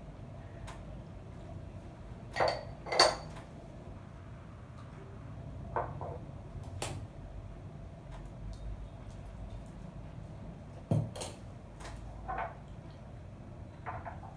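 Porcelain tea cups and teaware clinking and knocking as they are handled and set down on the table, in a few separate knocks, the loudest a pair about two and a half to three seconds in.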